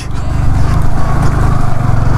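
Yamaha R15 V3 motorcycle's single-cylinder engine running steadily while riding along a gravel track, heard from the rider's seat.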